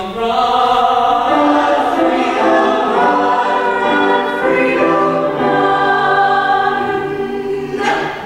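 Mixed men's and women's vocal ensemble singing a gospel-style show tune in full harmony, holding long chords that shift about once a second, with piano accompaniment. The sound dips briefly near the end.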